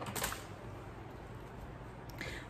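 Handling noise as the recording phone is picked up and turned: a short click just after the start, then faint rustling over quiet room hiss.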